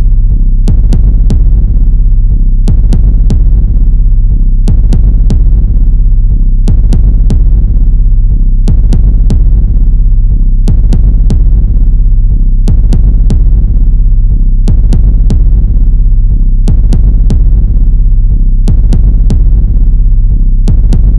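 Background music: a steady, throbbing low drone with a sharp ticking beat that repeats in a pattern about every two seconds.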